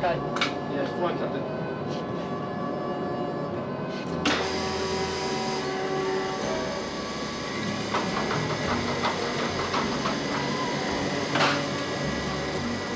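Cinema projection box: a 35 mm projector running, with muffled speech and music from the film's soundtrack in the background. Sharp mechanical clicks come about half a second in, at about four seconds (where a steady low hum also starts) and near the end.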